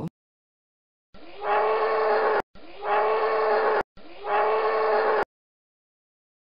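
Buffalo lowing three times: the same moo repeated, each call about a second and a half long, starting softly, then swelling into a steady drawn-out tone before cutting off abruptly.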